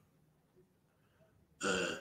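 Near silence for about a second and a half, then a man's brief drawn-out hesitation sound, "ee".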